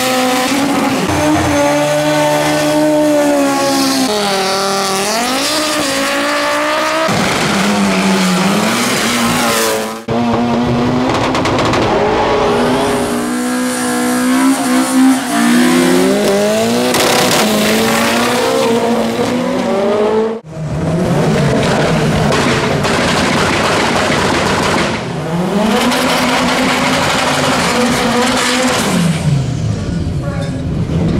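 Drag-racing car engines revving hard and accelerating, in three clips cut abruptly about ten and twenty seconds in. Near the end an engine is held at high, steady revs.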